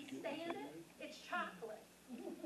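A woman talking into a microphone, in short phrases with brief pauses.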